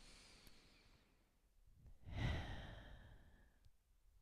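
A woman's slow, deep breaths, picked up close on a headset microphone as part of a deep-breathing exercise. There is a faint breath at the start, then a louder, long breath about two seconds in that fades away.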